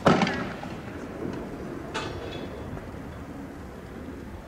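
Two bangs: a loud blast at the start that dies away over about half a second, then a sharper, quieter crack about two seconds later, over a low rumble.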